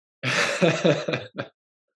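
A man's burst of breathy laughter in a few falling pulses, stopping about a second and a half in.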